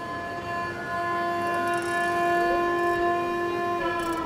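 Carnatic music: a single long, steady held note in an alapana of raga Hindolam, bending in pitch near the end.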